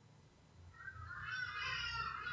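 A faint, drawn-out high-pitched cry, starting about a second in and lasting nearly two seconds.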